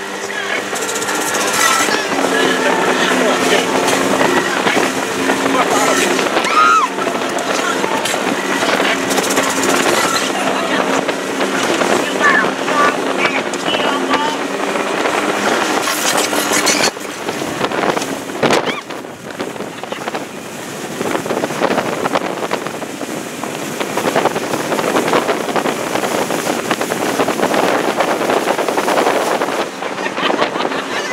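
Speedboat under way at speed: a steady engine hum over the rush of wind and water spray, the hum giving way to mostly wind and water rush a little over halfway through.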